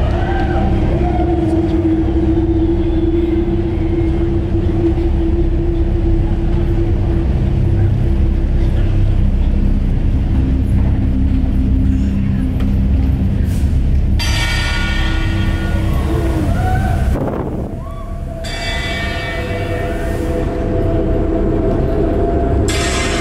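Loud, deep rumbling drone with a sustained low note, ominous intro music and sound effects over an arena sound system. About fourteen seconds in, a bright hissing, shimmering layer comes in, cuts out briefly, then returns.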